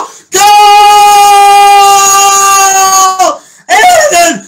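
A man's long, loud celebratory shout held on one high note for about three seconds, then broken off, followed near the end by shorter shouts as he celebrates a goal.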